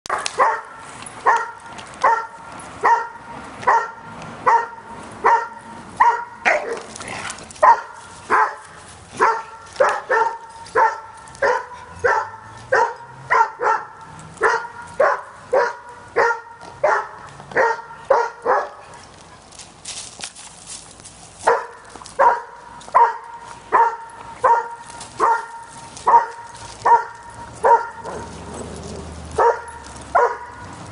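A dog barking over and over in a steady, even rhythm, a little more than one bark a second, with a pause of a few seconds just past the middle before the barking picks up again.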